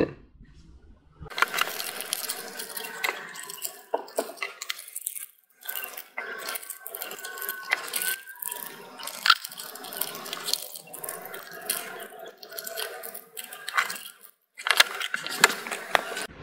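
Foil booster-pack wrappers crinkling and rustling as they are handled and cut open, a dense irregular run of small clicks and crackles heard in fast-forward.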